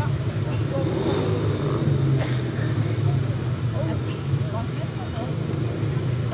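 Speedway motorcycles' 500 cc single-cylinder engines running steadily at the start gate, with a voice talking over them.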